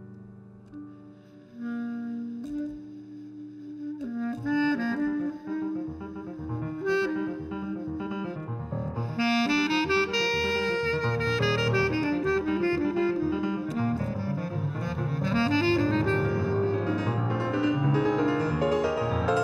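Clarinet and grand piano playing jazz as a duo. Sustained piano chords open, then the clarinet's melody runs over busier piano accompaniment, and the music grows steadily louder.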